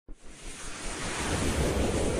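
A rushing, wind-like whoosh sound effect swelling steadily louder as an animated logo intro begins.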